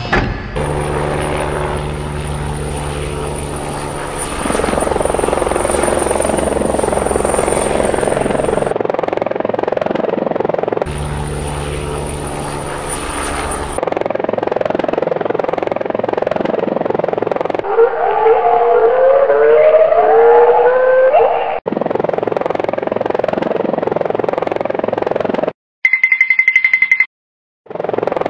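Helicopter sound effect: a steady rotor and turbine sound with a high whine, which drops out for about two seconds and comes back, then gives way to a rougher rumbling noise with rising and falling tones a few seconds later.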